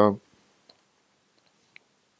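A man's drawn-out "uh" at the very start, then near silence broken by three faint, short clicks.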